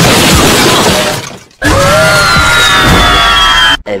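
Car-crash sound effect with shattering glass, fading out by about a second and a half in. It is followed by music with a high tone gliding slowly down.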